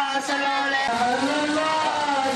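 Mourners' voices chanting a Shia lament for Husayn, with long held notes that glide slowly in pitch.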